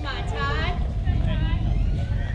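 High-pitched voices shouting and calling out, loudest in the first second, over a steady low rumble.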